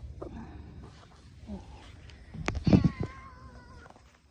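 A domestic cat meowing close to the microphone: a short, faint call about a second and a half in, then a sharp tap and a loud meow that trails off into a long, wavering note near the end.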